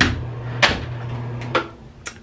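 Bathroom exhaust fan humming steadily, with a couple of sharp knocks. About one and a half seconds in, a click and the hum stops as the fan is switched off.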